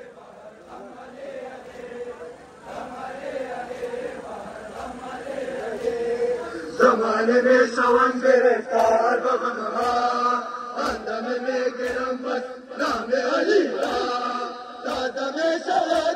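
A crowd of men chanting a Muharram noha in unison, softer at first and swelling about seven seconds in. From about eight seconds, sharp slaps come roughly once a second: hands striking chests in matam, keeping the beat of the chant.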